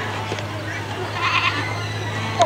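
A goat bleating once, a short call a little over a second in, over a steady low hum.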